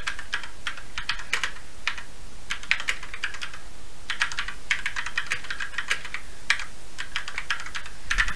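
Typing on a computer keyboard: runs of quick keystrokes broken by brief pauses.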